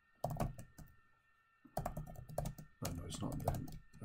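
Typing on a computer keyboard in bursts of keystrokes: a short run near the start, then longer runs from about two seconds in until near the end.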